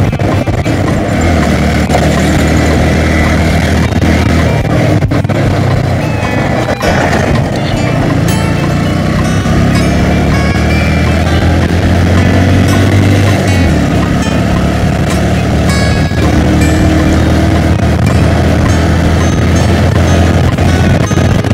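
Motorcycle running at road speed with wind noise, under background music.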